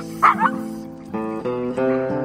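A German Shepherd barks once, sharply, about a third of a second in, over background acoustic guitar music.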